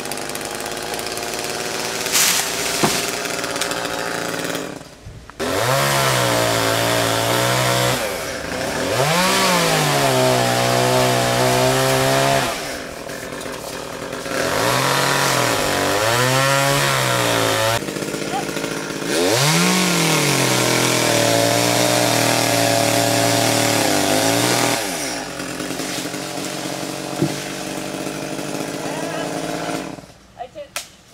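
Two-stroke chainsaw being throttled up again and again as it cuts, the engine pitch rising and falling, dropping back to idle between runs. Near the end it settles at idle.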